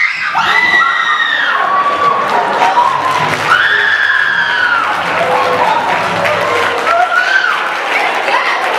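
A woman's loud, high-pitched wailing cries, three long drawn-out wails, over a general din of many voices.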